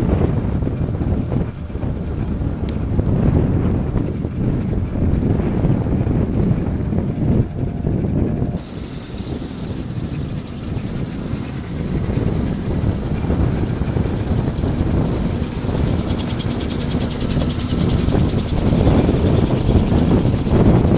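Wind buffeting the microphone: a loud, steady low rumble. About eight seconds in, a fainter high hiss joins it.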